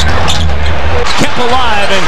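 Crowd noise in a basketball arena, heard through a TV broadcast, with a commentator's voice coming in during the second half.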